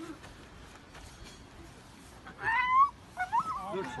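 Puppy crying in distress while stuck in a hole in a concrete wall: one loud, high cry about two and a half seconds in, then several shorter cries near the end.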